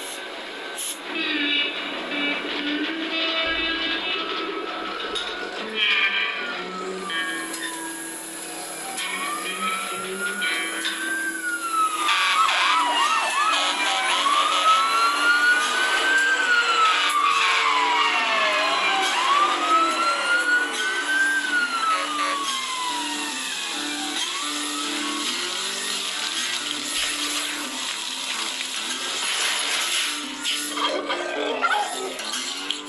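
Fire-engine siren sound effect from the AnTuTu 3D benchmark's animated fire-truck scene, wailing slowly up and down in pitch several times from about a third of the way in, over background music.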